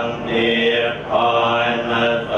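Ceremonial chanting: voice chanting in long held notes, in phrases about a second long, during a Thai Buddhist ordination rite.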